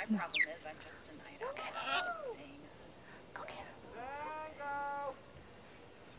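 A faint, distant human voice calling out twice: a short call about two seconds in that rises and falls in pitch, then a longer call near the end that rises and then holds a steady pitch. It is a recall call to a free-flying macaw, shouted across open ground.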